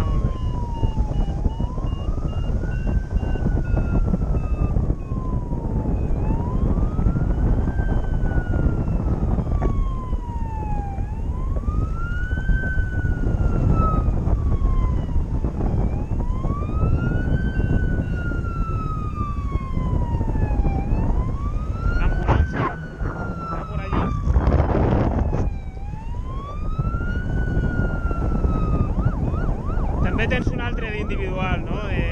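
A siren wailing, its pitch sweeping up and then sliding slowly back down about every five seconds. It sounds over a loud, steady wind rush on the microphone, with a few louder gusts a little past the middle.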